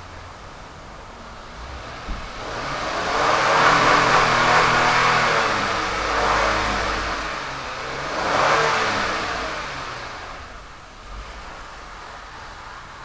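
A car driving past, its engine and road noise swelling to a peak about four seconds in, easing off, then swelling once more about eight seconds in before fading away.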